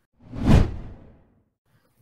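A whoosh sound effect marking an edit transition: one swell of rushing noise with a deep low end that peaks about half a second in and fades away over the following second.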